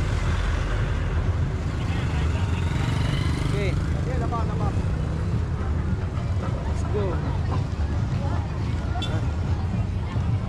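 Busy street ambience: scattered voices of a roadside crowd over a steady low rumble, which eases a little about halfway through.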